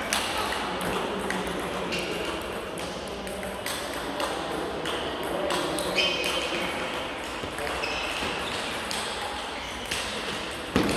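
Table tennis ball clicking off bats and the table in rallies, sharp clicks at uneven intervals, over the murmur of voices in a sports hall.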